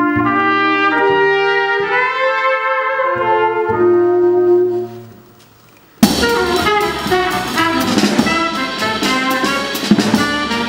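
Small jazz quartet: trumpet and alto saxophone play a slow line of long held notes together over double bass. The sound fades away about five seconds in, and after a second's pause the whole band comes in loudly, with drums and cymbals.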